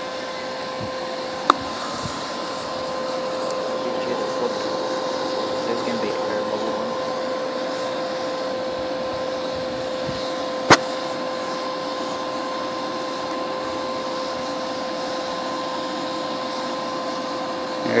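Hair dryer blowing air through a pipe into a homemade brick foundry furnace: a steady whine with a rushing hiss, running without a break. Two sharp clicks cut through it, a light one a second or so in and a louder one about ten seconds in.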